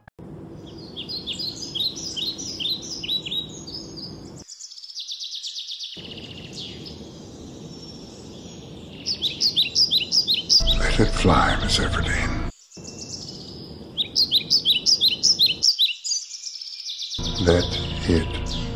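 Songbirds chirping in quick, repeated series over a steady background hiss, in several stretches with short breaks between them. About ten seconds in, a louder, deeper sound with gliding pitch breaks in for about two seconds.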